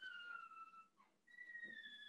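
Two faint, high whistling tones, each sliding slightly down in pitch; the first fades out about a second in, and after a short gap a second, slightly higher one begins.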